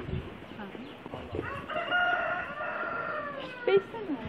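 A rooster crowing once, one long call of about two seconds beginning a little over a second in, falling in pitch at the end.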